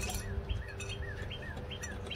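A songbird calling a short, arched chirp over and over, nearly three times a second, with a faint steady low hum underneath.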